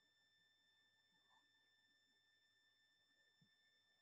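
Near silence, with only a very faint steady high-pitched tone.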